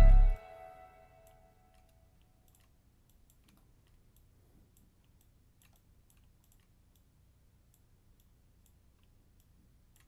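A trap beat with 808 bass and drums stops suddenly just after the start, leaving a short ringing tail. Then come faint, irregular clicks of a computer mouse.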